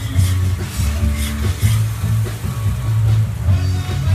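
Music with a prominent bass line, loud throughout, with a faint sizzle of food frying on the food truck's grill underneath.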